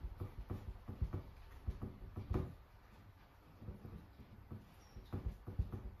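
Soft, irregular taps and rubbing as a damp cloth is pressed by hand onto a paint inlay on a painted wooden door panel, wetting its backing so the design transfers. There is a quieter stretch in the middle.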